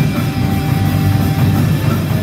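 Live heavy metal band playing loudly: electric guitars with a drum kit.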